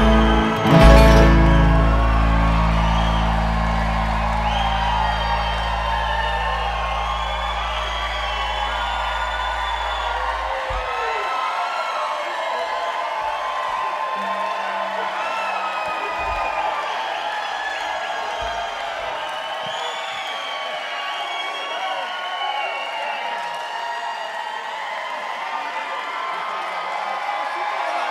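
A bluegrass band's final chord, struck about a second in, rings out and slowly fades away over about ten seconds. Throughout, the crowd cheers, whoops and whistles.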